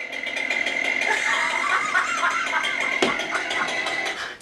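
A chainsaw running, heard through a phone's small speaker, with voices in the recording and a sharp knock about three seconds in.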